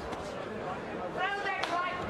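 Broadcast boxing commentary: a man's voice speaks briefly in the second half over steady arena background noise.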